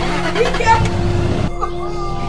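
Range Rover Sport SUV engine running as the vehicle moves off, mostly in the first second and a half, under a steady music drone.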